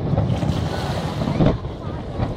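Aerial fireworks display: a continuous low rumble with a few sharp bangs, the loudest about one and a half seconds in.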